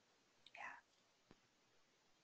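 Near silence, with a brief faint murmur of a voice about half a second in and one faint click a little later.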